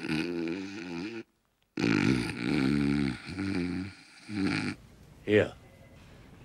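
A man snoring loudly in long, drawn-out snores with a wavering pitch, several in a row. They are broken by a moment of dead silence a little over a second in and stop near the end, just before a short spoken "yeah".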